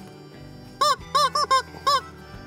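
Yellow rubber chicken squeeze toy squawking four times in quick succession as it is squeezed, starting just under a second in, each squawk rising and falling in pitch.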